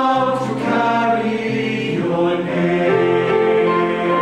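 Male choir singing, holding sustained chords in several-part harmony.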